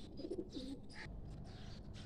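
Pigeons cooing faintly: a couple of short, low coos in the first half, with a brief higher bird note about a second in.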